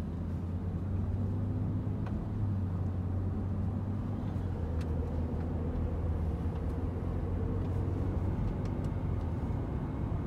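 Steady road and engine noise inside the cabin of a moving BMW: a low, even hum with tyre rumble underneath, and a few faint clicks.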